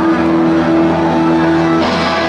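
A chord held by thousands of guitars playing together, ringing steadily. Near the end it gives way to a rush of crowd noise.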